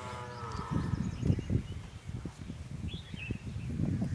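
Khillar calf bleating: one drawn-out call that falls slightly and ends within the first second. After it come irregular low thumps and scuffs.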